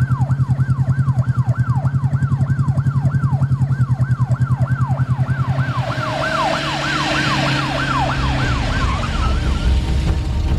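Police escort siren on a fast yelp: a falling sweep repeated about three times a second over a low pulsing hum. The siren fades out near the end as a hiss rises.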